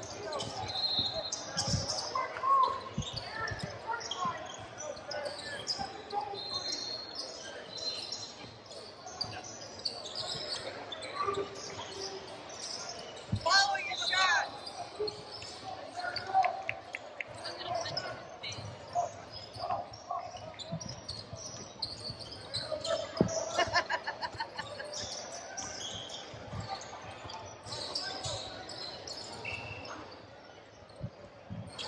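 Youth basketball game on a hardwood court: a basketball being dribbled and bounced, sneakers squeaking on the floor, and players and spectators calling out, all echoing in a large gym.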